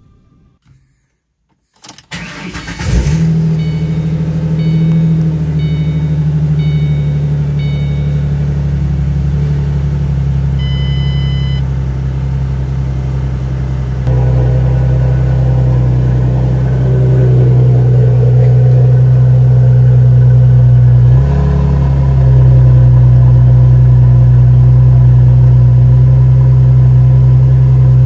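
Ford Mustang engine starting about two seconds in, then idling steadily with a deep hum. A string of short dashboard warning chimes beeps over the idle early on, followed by one longer chime. A brief throttle blip comes about two-thirds of the way through, and the engine runs a little louder afterwards.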